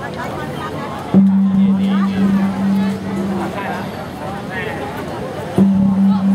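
A deep ceremonial gong struck twice, about four and a half seconds apart, each stroke ringing on with a steady low hum for a couple of seconds over crowd chatter.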